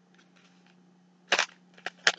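A foil sample packet handled in the hands: faint crinkling, then one sharp crackle a little past halfway, followed by a couple of small ticks.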